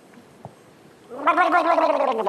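A man gargling a mouthful of water with his head tilted back: a voiced, warbling gargle that starts about a second in and is loud.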